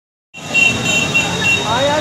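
Busy street noise with traffic and voices, starting about a third of a second in; a short high tone sounds four times in quick pulses, and a voice speaks near the end.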